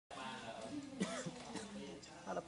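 A person's voice making wordless vocal sounds, with pitch that rises and falls in short glides.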